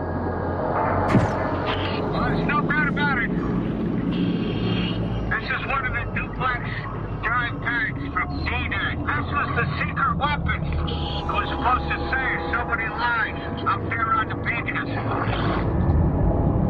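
Garbled, unintelligible voices over a diver's underwater communication system, breaking in and out throughout, with a steady low hum underneath.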